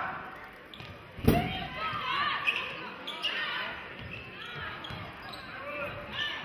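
Basketball bouncing on a hardwood gym court, with one loud thud about a second in and lighter knocks after it. Voices of players and spectators carry through the large gym.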